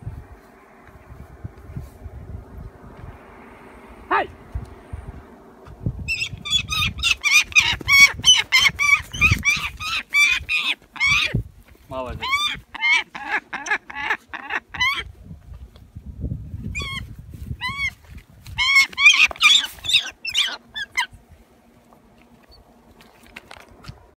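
A hawk calling in rapid runs of short, high, sharp calls, several a second, in bursts over about fifteen seconds, after a single sharp sound about four seconds in.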